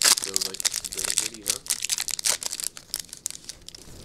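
Foil wrapper of a Topps baseball card pack crinkling in the hands as it is opened. The crackles are loudest right at the start and thin out near the end.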